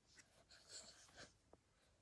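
Near silence with faint scratchy rustling and a soft click.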